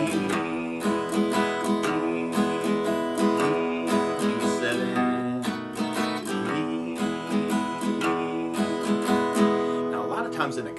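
Acoustic guitar played in a bass-and-strum pattern: a low root-note bass string picked, then down-up strums of the open chord, repeating in a steady rhythm.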